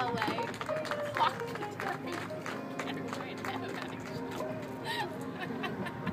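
Background music with sustained tones, mixed with faint, indistinct voices.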